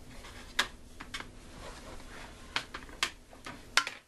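A string of sharp, irregular clicks and light taps, about eight in all, some in quick pairs, from things being handled on the kitchen counter.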